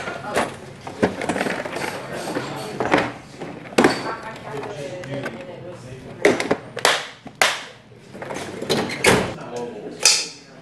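A run of knocks and clicks from handling shop storage: a metal tool-chest drawer is pulled open, then a plastic parts organizer's lid is opened and the small bearings inside are sorted through.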